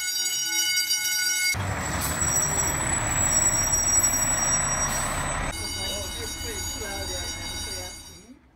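A building fire alarm sounding one steady electronic tone, then for about four seconds the loud running engine of a fire truck, after which the alarm tone comes back.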